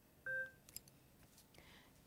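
A single short electronic beep from the Servo-n ventilator about a quarter second in, signalling that the Y-sensor calibration has passed.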